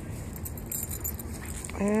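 Quiet open-air background with a brief light metallic jingle just under a second in, then a man's voice beginning near the end.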